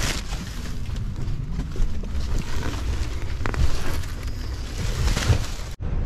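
Stuffed black plastic garbage bags rustling as they are shoved up into a box truck's cargo area, with a few knocks against the load and a low rumble.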